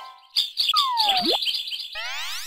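Bird chirping sound effect: a rapid string of short high chirps starting about a third of a second in, with a long whistle gliding down in pitch and a quick rising sweep near the middle.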